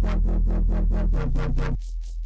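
Distorted synth bass loop playing a rhythmic pattern, pulsing about four times a second over a steady deep low end. Near the end the body of the bass drops away. Only a thin, pulsing high noise layer is left: the quiet band of the bass split out and boosted for presence.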